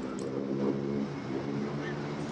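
City street noise: a motor vehicle's engine running nearby, with people's voices.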